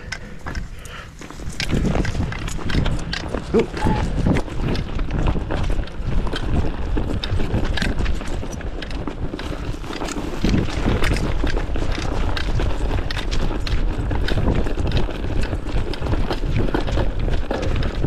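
A dog running across a grass field, its footfalls thumping close to a camera strapped to it, with rustling and knocks from the harness; it picks up about a second and a half in.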